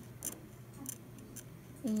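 Metal tip of a YG 7/8 universal curet clicking and scraping against a plastic typodont canine: three faint, short, high-pitched ticks about half a second apart as the instrument is placed and rolled on the tooth.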